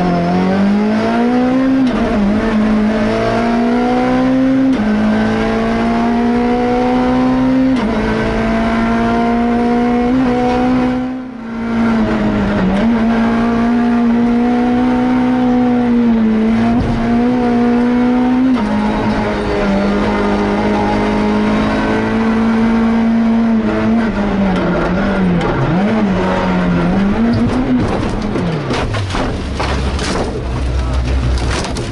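Citroën C2 R2 rally car's four-cylinder engine heard from inside the cabin under hard acceleration. Its pitch climbs through each gear and drops at every upshift. Near the end the note swings up and down, then falls away with a burst of noise as the car leaves the road into foliage.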